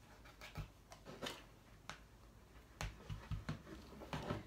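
Hands working flannel quilt fabric at the edge, giving soft scratching and rustling with scattered small clicks. Near the end come a few light knocks as a small craft iron is picked up and handled.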